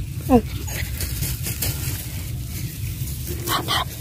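A metal digging blade chopping and scraping into dry, clumpy clay soil while a rat burrow is dug out, over a steady low rumble. A dog gives two short yelps near the end.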